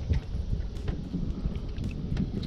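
Wind buffeting the camera microphone as an uneven low rumble, with a few faint clicks.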